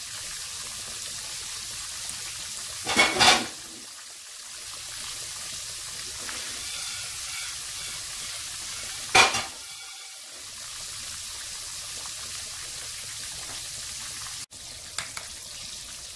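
A flour-dredged fish fillet frying in hot oil in a nonstick frying pan over medium-high heat, with a steady sizzle. Two brief louder bursts come about three and nine seconds in.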